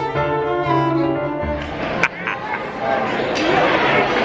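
Background music on bowed strings, violin and cello, stops about a second and a half in. It gives way to the chatter and clatter of a busy dining room, with a sharp click about two seconds in.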